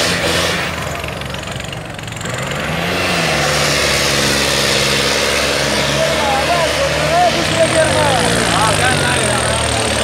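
Powertrac Euro 60 tractor's diesel engine labouring under heavy load as it drags a stuck harrow through the soil, its pitch sagging briefly about two seconds in and then recovering. A crowd of men shouts over it in the second half.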